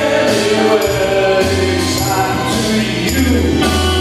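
A small band playing live: electric guitar and keyboard, with tambourine shaken in time and a singing voice over them.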